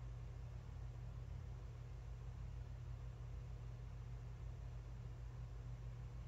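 Quiet room tone with a steady low hum and no distinct handling sounds.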